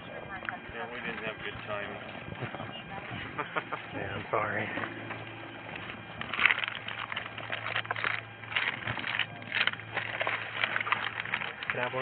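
Plastic bags and packed items rustling and crinkling in short, crackly spells as hands rummage through a bag, busiest from about six seconds in, with voices talking in the background.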